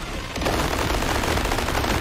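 Cartoon sound effect of legs kicking furiously to keep a broom aloft: a dense, rapid-fire rattle that starts about half a second in and keeps going without a break.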